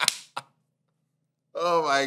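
Two sharp hand claps about a third of a second apart as a man laughs, the second shorter and fainter. About a second of silence follows, then his voice comes back near the end.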